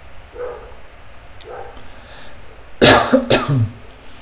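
A person coughing: a short bout near the end, one loud cough followed by a couple of smaller ones.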